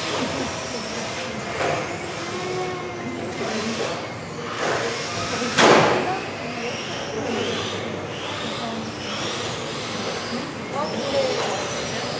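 Several electric RC touring cars racing in a hall: their motors whine, rising and falling in pitch as they accelerate and brake, echoing off the walls. A loud, sharp noisy burst stands out about five and a half seconds in.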